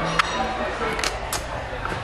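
Loud room ambience of muffled background music and voices, with a few sharp clicks.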